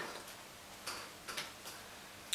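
Faint handling noise: a few light rustles and ticks as a large silky scarf is laid down on a table and a book is taken up in the hands.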